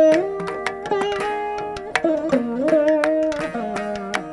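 Carnatic veena playing, with plucked notes that slide and bend between pitches. It is accompanied throughout by rapid mridangam and ghatam strokes.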